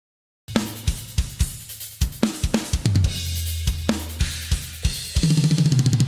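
Acoustic drum kit with Meinl cymbals playing a solo, starting half a second in: crashes, snare and tom hits over the bass drum. About five seconds in it breaks into a fast, even run of double bass drum strokes, played on Axis direct-drive pedals with a triggered, clearly defined kick.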